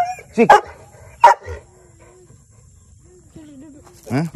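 A pit bull gives one short bark about a second in, after a spoken command.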